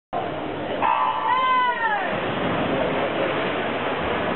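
Electronic starting signal at a swimming race: a steady pitched beep about a second in, followed by a pitched sound that slides downward. After it comes the steady noise of swimmers splashing and spectators in the pool hall.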